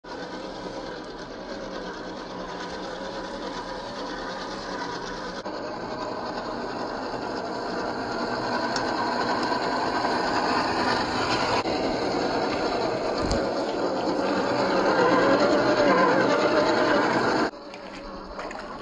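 The 540 45T brushed electric motor and gear drivetrain of a 1/10-scale Axial SCX10 II RC crawler whining as it drives, the pitch wavering up and down with the throttle and the sound growing louder over time. A single thump about two-thirds through, and the sound drops suddenly near the end.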